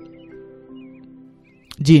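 Soft background music of long held notes under a pause in a man's talk; his voice comes back near the end.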